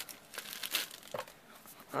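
Clear plastic wrapping crinkling in the hands as a pack of papers is handled, in a few short crackles, the loudest just under a second in.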